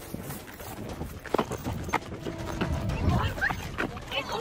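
Footsteps of people running on pavement, a series of irregular thuds, mixed with knocks and rustle from a handheld camera carried at a run.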